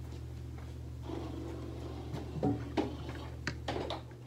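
Steady low hum in a small workshop, with a few short knocks and clicks in the second half: footsteps and the clatter of a torque wrench being fetched.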